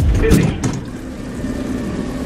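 The last beats of background music stop about half a second in, leaving the steady low rumble of a commuter electric train at its doorway.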